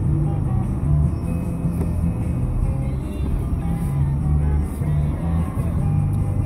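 Low, steady car-cabin rumble with music playing quietly underneath, its bass notes shifting every fraction of a second.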